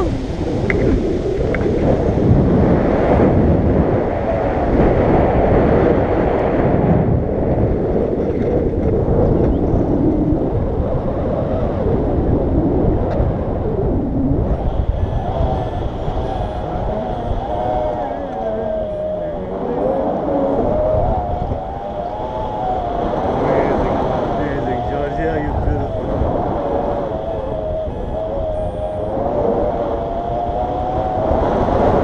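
Loud wind buffeting the microphone of an action camera carried through the air on a tandem paraglider. In the second half the rushing is joined by wavering, whistle-like howling tones.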